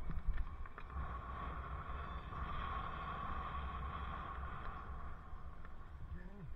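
Wind rumbling on a helmet-mounted microphone while cycling, over steady street and traffic noise that swells in the middle and eases off toward the end.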